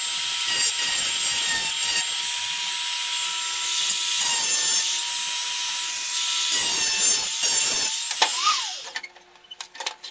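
A handheld electric rotary tool runs with a steady high whine as it grinds at a steel wheel axle on a pressed-steel toy truck chassis. Its pitch drops as it spins down at about eight and a half seconds, followed by a few small metallic clicks.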